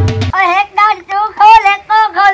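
Drum-led music breaks off about a third of a second in. A high-pitched voice takes over in short, wavering, sing-song phrases.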